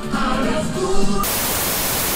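Background music that is cut off about halfway through by a burst of loud television static, a steady hiss used as a transition effect between clips.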